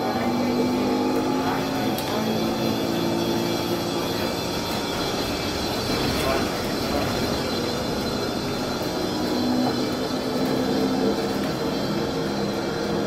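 Cabin sound of a Proterra ZX5 battery-electric bus under way: a steady electric drive whine over tyre and road noise.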